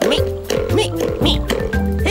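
Cartoon squirrel character's rapid squeaky vocal chatter, short squeaks about two or three a second, over background music with steady bass notes.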